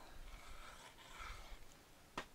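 Faint, soft rustle of kraft cardstock being handled, barely above room tone.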